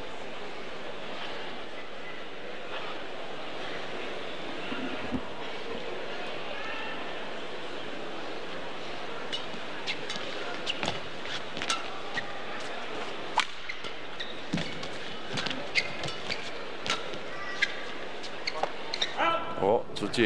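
Indoor arena crowd murmur, then a badminton rally from about halfway through: sharp racket strikes on the shuttlecock roughly once a second, irregularly spaced. Crowd noise swells near the end as the rally ends.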